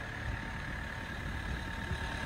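Steady low background rumble with a faint, thin, steady hum above it. There are no distinct events.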